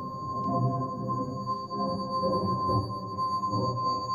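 Electroacoustic music over loudspeakers: a steady high tone held over a dense, shifting low texture.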